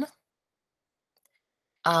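Speech breaks off at the start, then almost dead silence for nearly two seconds, and speech starts again near the end.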